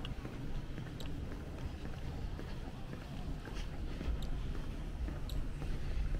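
Footsteps on a hard tiled floor: light, sharp clicks at an uneven pace, closer together in the second half, over a steady low rumble.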